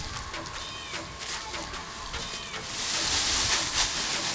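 Dry leaf litter rustling and crunching under footsteps, swelling into a loud rustle about three seconds in as the leaves are churned by a lunge.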